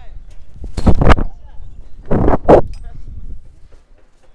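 Two loud gusts of wind buffeting an action camera's microphone as the jumper hangs and swings on the rope, about a second in and again just past two seconds, with low rumble between.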